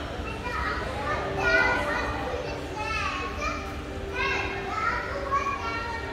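Children's high-pitched voices talking and calling out over a steady low hum.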